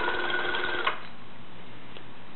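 Watson-Marlow 323Dz peristaltic pump running at its maximum 400 RPM, a steady motor whine with several tones that cuts off about a second in as the 30 ml dose finishes.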